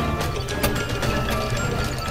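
Intro music laid over mechanical gear-and-ratchet sound effects, with several sharp clicks through it.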